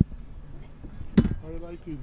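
A single sharp knock about a second in, followed by a man's voice starting to speak.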